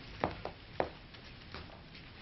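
Three short, sharp knocks in quick succession within the first second, then faint room tone.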